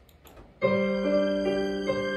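The electric piano intro of an instrumental backing track starts suddenly about half a second in, playing slow sustained chords. A couple of faint clicks come just before it.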